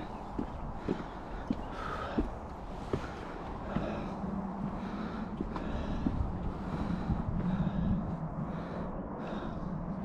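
Footsteps of a hiker on a timber boardwalk, a short knock about every half second for the first three seconds. A steady low hum comes in under them at about four seconds.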